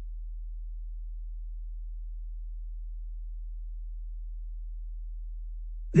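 A steady low hum, one unchanging deep tone with nothing else over it.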